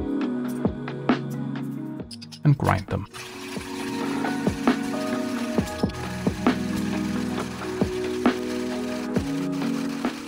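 Hario hand coffee grinder being cranked, grinding whole coffee beans with irregular clicks, starting about three seconds in, over background music.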